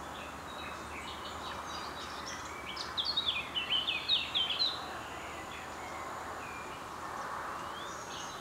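A small bird sings a quick phrase of short, falling chirps about three seconds in, lasting roughly two seconds, over a steady outdoor background hiss.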